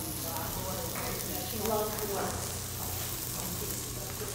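Garlic and red onion sizzling in olive oil in a pot, with a spoon stirring it. Faint voices are heard now and then.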